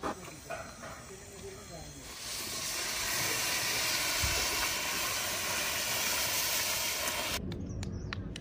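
Dry rice poured from a plastic bag into a large aluminium cooking pot: a loud, steady hissing rush that starts about two seconds in and cuts off abruptly near the end.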